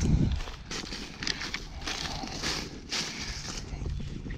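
Footsteps crunching and rustling through dry fallen leaves at a steady walking pace, with a low bump on the microphone at the start.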